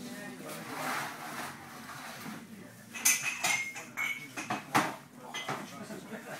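Metal pots, plates and cutlery clinking: a handful of sharp clinks, several with a brief high ring, coming from about halfway through.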